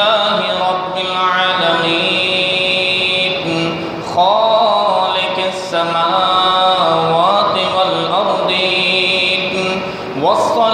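A man's voice in melodic Arabic Quran recitation, holding long notes that rise and fall in slow glides between breaths.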